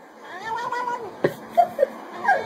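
Domestic cat meowing while being stroked: one long meow that rises and then falls in pitch, followed by a sharp click and two brief higher calls.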